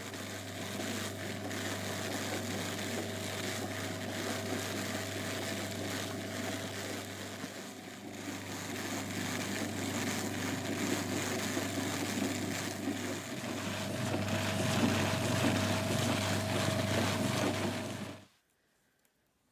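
Drum carder running with a steady hum, its toothed drums spinning as wool fibre is fed in and carded. It gets louder for the last few seconds.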